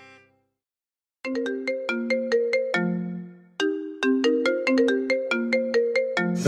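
A phone alarm ringtone: a quick melody of short, plinking notes that starts about a second in, pauses briefly halfway through and then repeats.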